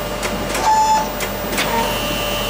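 Automatic robotic book scanner working, its air blower and suction hissing steadily as they lift and separate an old book's page. A few sharp mechanical clicks and a short steady tone about halfway come from the machine.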